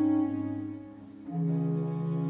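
Baroque string orchestra with continuo playing a slow movement: a held chord dies away into a brief pause, then a new held chord with a lower bass note enters just over a second in.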